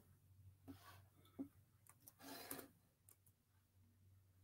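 Near silence: room tone with a faint steady low hum and a few faint clicks and soft rustles, the clearest rustle about two seconds in.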